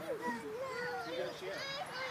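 Young children's voices vocalising and babbling, a string of short rising and falling sounds.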